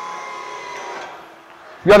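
Hydraulic pump motor of a TOPPY Maxi dual-press pallet inverter running with a steady whine as the side press clamps the load, stopping about a second in.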